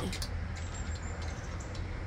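Quiet outdoor background: a steady low rumble with a faint even hiss, and no distinct events.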